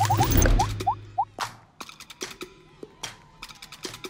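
Short playful music-and-effects stinger for an animated title card: a low hit with a brief hum at the start, five quick rising blips, then a scatter of light taps.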